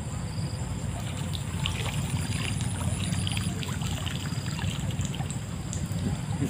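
Water trickling and spattering off a bamboo-framed lift net (branjang) as it is hauled up out of a river, the spatters starting about a second and a half in.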